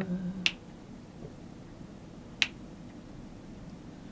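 Finger snaps keeping time for unaccompanied singing: two sharp snaps about two seconds apart. The tail of a held sung note dies away at the very start.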